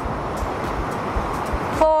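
Ocean surf breaking and washing up a sandy beach, a steady rushing noise, with a faint background music beat. A voice starts right at the end.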